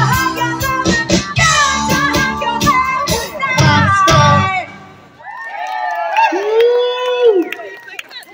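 Live band with drums, bass and singing playing the last bars of a song, which stops about halfway through. Then the audience cheers and whoops.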